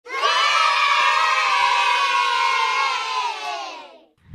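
A crowd of children cheering together in one long, held cheer, many voices at once, fading out near the end.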